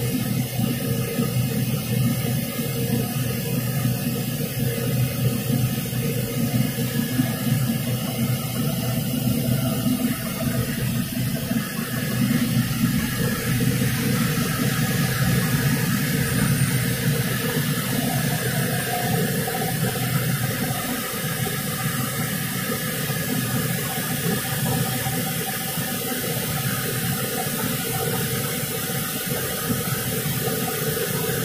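Interlock circular knitting machine running: a steady, dense mechanical whir with a hiss over it, unbroken throughout.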